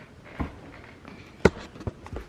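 Footsteps and a few sharp knocks as a person walks across a room holding the camera, the loudest knock about one and a half seconds in.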